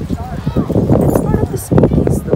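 Footsteps on stone paving, a string of short hard steps, with people talking in the background.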